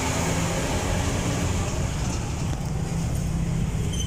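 Steady low engine rumble and road traffic noise, heard from an open tricycle sidecar as a tractor-trailer hauling a shipping container passes alongside.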